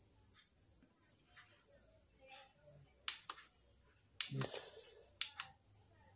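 A quiet room with a few sharp clicks, two pairs about three and five seconds in: remote-control buttons pressed to step a set-top box to the next channel. A short murmur comes between the two pairs.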